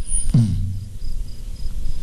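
A high, thin chirp repeating about four times a second, like an insect, over a steady low hum. About half a second in, one short low tone slides down in pitch and then holds briefly.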